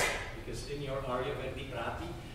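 Speech: a person talking, with no other clear sound.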